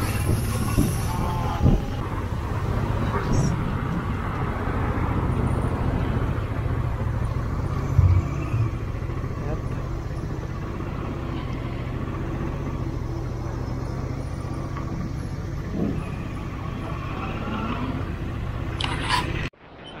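Honda Transalp 650's V-twin engine running at low speed in city traffic, a steady low rumble with street traffic around it and a single thump about eight seconds in. The sound cuts off abruptly just before the end.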